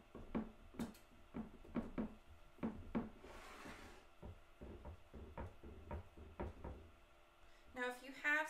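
Fingers pressing and patting a crumbly pecan pie crust mixture into a ceramic baking dish: a string of soft, irregular taps and thuds, two or three a second, with a brief rustling scrape a little past the middle.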